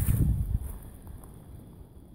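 Footsteps and camera-handling rustle as the camera is carried at a walk, a few low thuds in the first half second, then dying away to quiet outdoor background.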